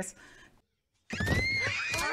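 Several cartoon girls screaming together, many high, wavering cries overlapping, starting about a second in after a brief silence.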